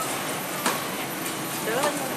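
Steady background hiss of a supermarket produce section, with one sharp click a little under a second in and a brief voice near the end.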